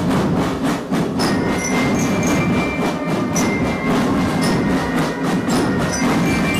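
Military drum band playing: brass horns and trumpets over a dense beat of marching drums.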